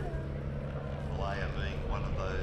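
Auster AOP.6's 145 hp de Havilland Gipsy Major piston engine droning steadily as the aircraft flies by, with a commentator's voice over it.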